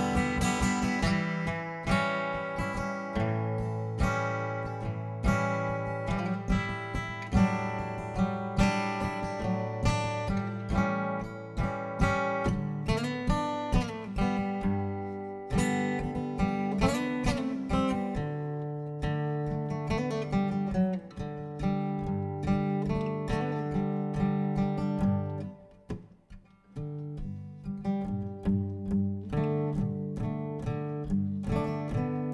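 Solo acoustic guitar playing an instrumental passage of picked notes over ringing bass notes, with no voice. Near the end the playing drops almost to silence for about a second, then picks up again.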